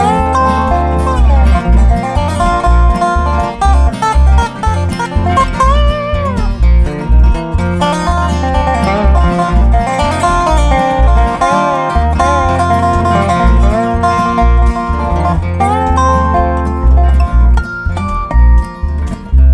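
Instrumental break of a country-gospel song: acoustic guitar and other plucked strings over a pulsing bass, with a lead line that slides between notes.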